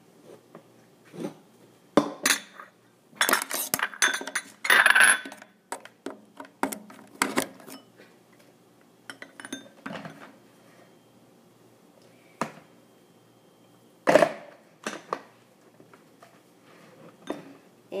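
Plastic clicking, knocking and clattering as a personal blender is assembled: the blade lid screwed onto the filled cup and the cup fitted onto the motor base. A dense run of clatter comes a few seconds in and a single sharp knock about two-thirds of the way through; the motor is not running.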